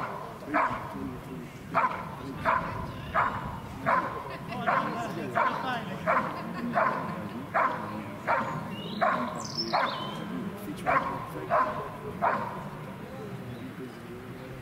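Young dog barking steadily at a decoy in a bite suit, about one bark every two-thirds of a second: the bark-and-hold guarding exercise, the dog holding the decoy in place with its barks. The barks stop about twelve seconds in.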